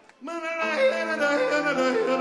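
A man yodeling with a live rock band. After a brief hush the voice comes in suddenly and jumps between high and low notes over a steady low backing.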